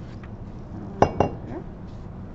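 Laboratory glassware clinking twice in quick succession, about a second in, glass knocking against glass or the bench with a short high ring.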